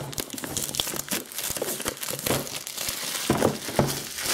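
Plastic shrink-wrap being pulled and crumpled off an iPad box: a dense, irregular run of crinkles and crackles with some tearing.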